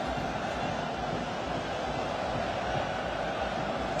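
Steady stadium crowd noise from the stands during live play.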